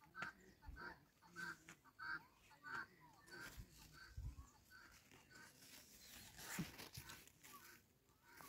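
Near silence, with a faint bird call repeated about every two-thirds of a second and soft rustling of squash leaves being handled.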